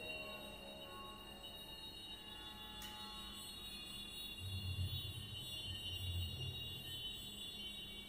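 Quiet electroacoustic ensemble music: thin, steady high tones held throughout, with a single sharp click about three seconds in. A low rumble swells in about halfway through and fades before the end.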